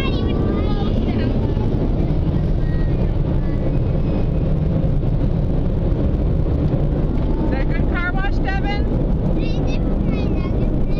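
Steady low rumble of car noise heard inside the cabin as the car leaves the car wash, with high children's voices chattering over it briefly near the start and again near the end.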